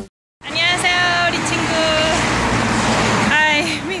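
A car passing on the road, its tyre and engine noise swelling and fading in the middle, under voices talking.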